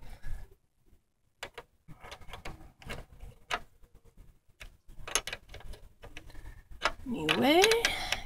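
Small open-end wrench clicking and tapping on a car battery's negative terminal clamp bolt as the negative cable is tightened back on: irregular short metallic clicks.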